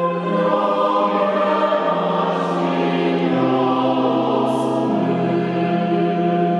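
Choir singing a sacred hymn in long held notes that shift in pitch every second or two.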